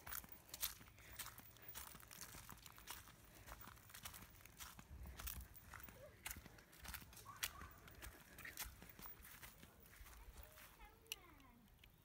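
Near silence with faint crunching footsteps on dry dirt and grass, a scatter of soft irregular crackles.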